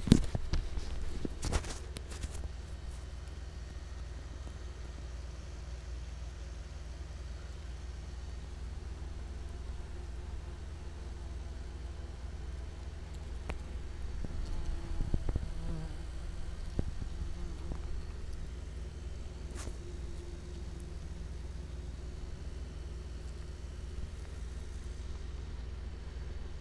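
German yellowjacket wasps buzzing around their exposed nest, the buzz wavering in pitch and swelling twice about midway, over a steady low hum. A few knocks near the start.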